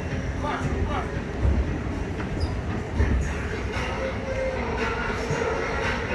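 Steady low rumble of a BART Fleet of the Future train car running, heard from inside the car, with voices over it.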